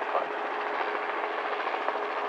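Twin-engine light aircraft (Diamond DA42) taxiing with both propellers turning: a steady engine drone with a faint low hum.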